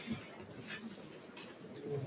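Quiet meeting-room lull with faint, low murmured voices, briefly near the start and again near the end.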